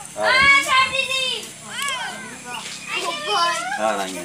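High-pitched voices calling out and chattering, several at once, with sharply rising and falling pitch.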